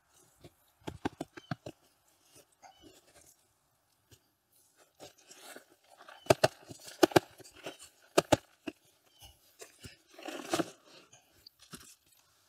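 Plants being knocked out of five-gallon pots: a series of sharp knocks and thumps on the pots as the root balls are worked loose, with soil crunching and foliage rustling.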